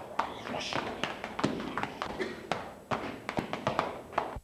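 A run of irregular light taps and knocks, with faint voices in the background.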